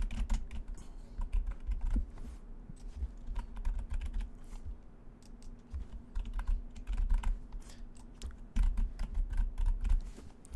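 Typing on a computer keyboard: a run of quick keystrokes in irregular bursts, over a steady low hum.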